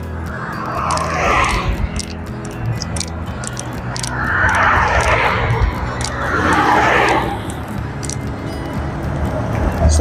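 Vehicles passing close by on a highway. Their noise swells and fades three times, about a second in, around the middle and just after, the middle two the loudest. Background music plays throughout.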